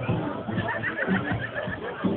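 A high, rapidly quavering call from a person, whinny-like, lasting about a second and a half, over crowd chatter.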